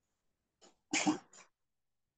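A single short burst of sound from a person about a second in, in three quick parts with the middle one loudest, on an otherwise silent call line.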